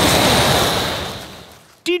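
A cartoon wolf's big blow of breath, a gusty whoosh of wind that starts at full strength and fades away over about a second and a half.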